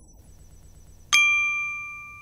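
A single bright bell-like ding about a second in, ringing on and slowly fading: a chime sound effect for the channel's logo animation.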